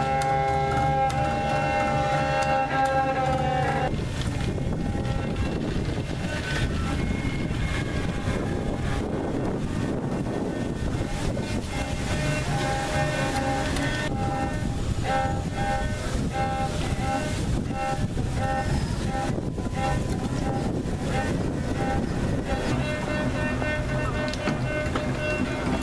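Experimental improvised music on double bass and violin: a held, bowed chord that breaks off about four seconds in, giving way to a dense rushing noise, over which short repeated high notes sound from about halfway through.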